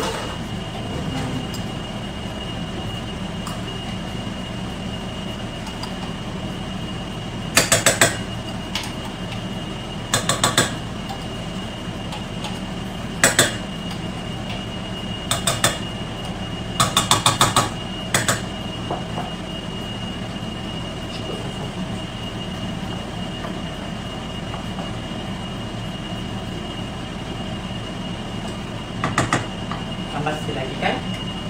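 Utensils clattering against stainless steel saucepans in several short bursts, over a steady appliance hum with a thin high whine.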